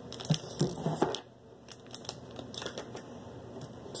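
A small clear plastic bag crinkling as it is handled, in quick irregular crackles through the first second and again in the second half.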